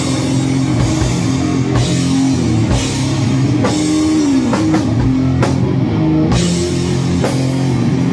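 Electric guitar and drum kit playing a slow doom/stoner sludge rock riff live, with held low guitar notes and cymbal crashes about once a second. About halfway through, one guitar note is bent and drops in pitch.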